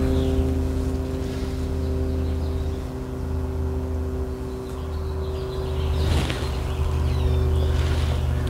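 A machine hum running steadily: a strong low drone with several steady tones above it, shifting slightly about five seconds in, and a brief noise about six seconds in.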